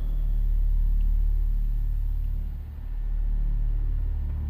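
A steady, loud low rumbling drone that dips briefly just before the middle.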